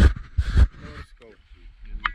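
Gloved hand handling a small handheld camera right at its bare microphone: loud rumbling knocks in the first half second or so, then quieter.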